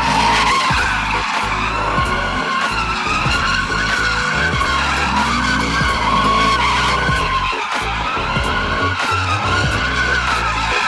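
A Chevrolet Camaro's tyres squealing without a break as the car spins donuts, the pitch of the squeal wavering up and down, with music and its steady bass beat mixed underneath.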